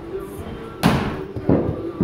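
A softball smacking into a catcher's mitt with one sharp pop, followed about half a second later by a duller thud.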